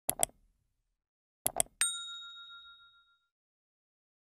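Subscribe-button animation sound effect: a quick double click, another double click about a second and a half in, then a single bright bell ding that rings out and fades over about a second and a half.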